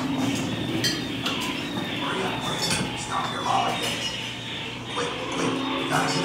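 Recorded scene audio in a dark ride's show scene: irregular metallic clinking mixed with snatches of music and a voice, with a spoken line starting near the end.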